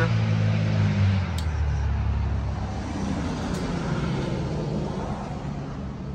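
Low rumble of a motor vehicle's engine. Its pitch drops about a second in, and it then fades slowly.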